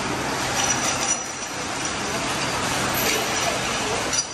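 Steady workshop background noise: an even hiss with a faint low hum and faint voices behind it.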